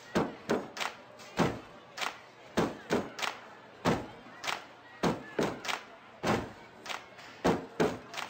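A rhythmic percussive beat of thumps and claps, about two a second, falling in groups of two or three with short gaps between them.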